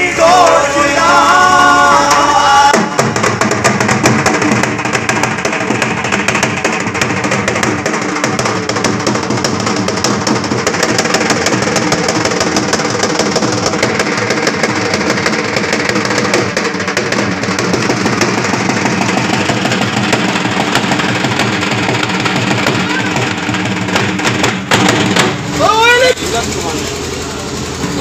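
Dhol, a double-headed barrel drum, beaten in a fast, continuous rhythm. Voices sing over it in the first couple of seconds, and men's voices call out with rising shouts near the end.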